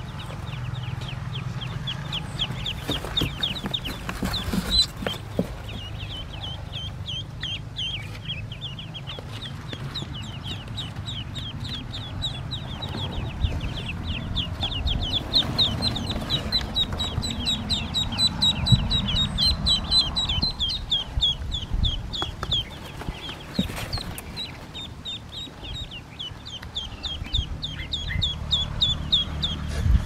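A brood of newly hatched Pekin ducklings peeping nonstop in rapid, high-pitched chirps, with occasional rustles and knocks from the nest straw.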